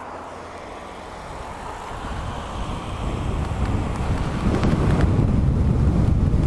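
Wind buffeting the microphone of a bike-mounted camera, building steadily from about two seconds in as the e-bike pulls away from a standstill and gathers speed, with road traffic underneath.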